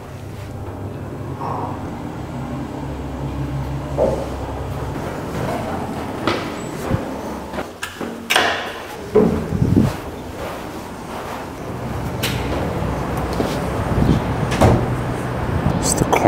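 Lift ride: a low steady hum from the moving lift car, with scattered knocks and clicks.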